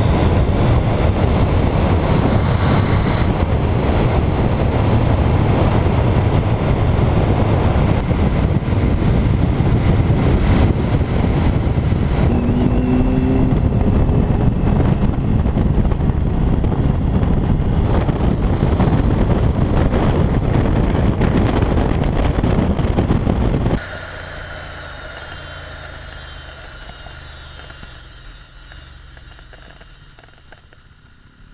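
Wind rushing over the camera microphone on a BMW K75 motorcycle riding at speed, with engine and road noise underneath. About 24 s in the sound drops suddenly to a much quieter level and keeps fading.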